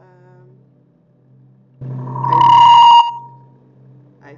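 A loud electronic ringing tone, about a second long, that starts suddenly about two seconds in and dies away just after three seconds: an unwanted interruption at the start of the recording.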